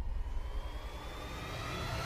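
Cinematic trailer riser: a thin whine that slowly rises in pitch over a low rumble, getting louder toward the end, like a jet-like rush building to a hit.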